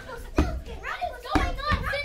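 Children's voices with three heavy thuds, footsteps on a hollow wooden stage floor: about half a second in, and twice close together a little past the middle.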